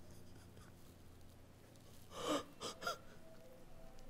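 A man crying: after a quiet stretch, a sobbing gasp about halfway through, then two short catches of breath.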